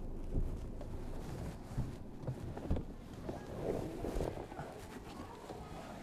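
Low rumble of wind on the microphone outdoors, with a few soft knocks scattered through the first three seconds.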